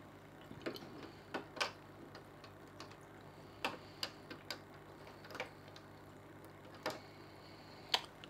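Faint, irregular light clicks and taps of hard plastic filter pipework being handled and fitted: the clear outflow pipe and an extension pipe pushed together and hung on the aquarium's glass rim.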